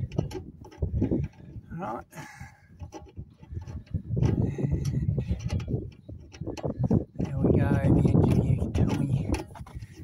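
Indistinct voice sounds with no clear words, coming in runs and loudest in the second half.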